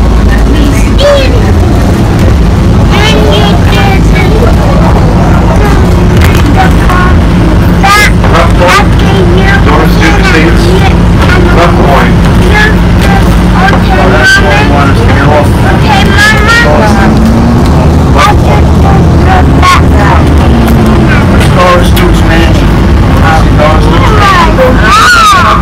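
Inside a moving city bus: steady engine drone and road rumble, loud and unbroken, with passengers' voices talking over it.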